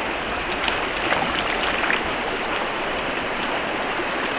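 Steady rush of a fast-flowing river, with a few light splashes in the first two seconds.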